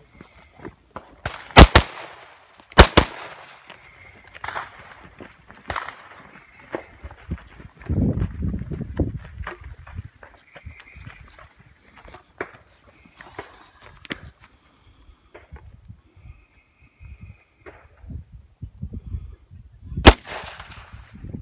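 Two loud gunshots about a second apart near the start, then footsteps and rustling as the shooter moves between positions, with a low rumble around the middle. A third shot comes right at the end.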